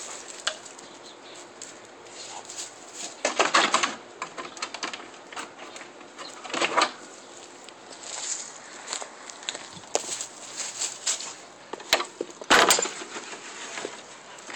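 A dog's claws scrabbling and knocking against wooden fence boards as it scrambles up, in a loud cluster about three and a half seconds in. Several shorter scrapes and knocks come later, the loudest a sharp clatter near the end.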